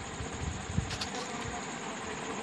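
Steady faint buzzing hum of background noise, with a couple of light ticks about a second in.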